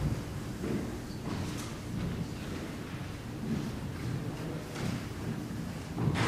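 Low room noise of people moving about a church sanctuary: footsteps, shuffling and a few soft thumps and knocks, with no music or speech.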